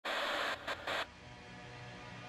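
A burst of static-like hiss lasting about a second, cutting out briefly in the middle, then dropping away to faint low steady tones.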